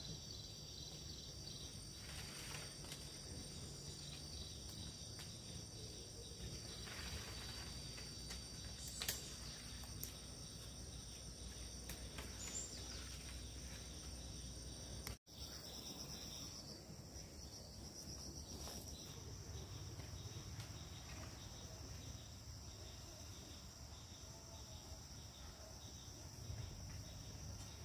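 Steady, high-pitched drone of insects, with a few faint ticks and rustles in the first half.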